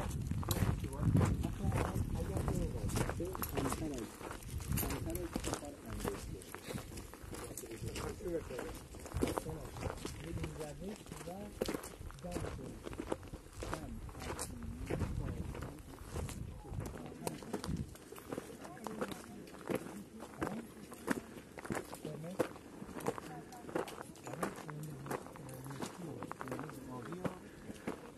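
Footsteps on a dirt and gravel trail, with several people talking in the background.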